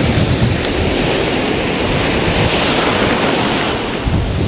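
Surf breaking and foaming water washing over a rocky reef flat: a loud, steady rush, with wind buffeting the microphone as a low rumble.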